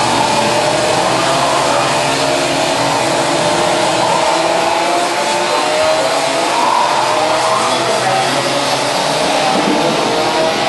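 Several 125 cc two-stroke Rotax Max kart engines whining together as the karts accelerate out of the corners, their overlapping pitches climbing slowly and starting again.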